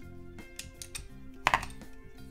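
Plastic LEGO bricks clicking and rattling as they are handled and pressed together, with a sharper click about three-quarters of the way in. Background music with sustained notes plays underneath.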